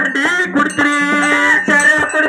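A singer's voice through a stage sound system in a dollina pada sung dialogue, with a steady held note through the middle and music accompaniment behind it.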